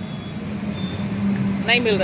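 Roadside traffic, with a vehicle engine running in a steady low hum. A man's voice starts near the end.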